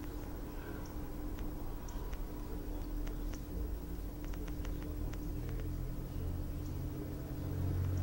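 Steady low electrical hum of room tone, with a scattering of faint, irregular clicks.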